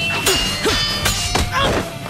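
Anime fight sound effects: a quick series of sharp hits and thuds, about five in two seconds, over a steady background music score.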